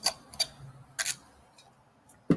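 A handful of short, sharp computer clicks, bunched in the first second or so.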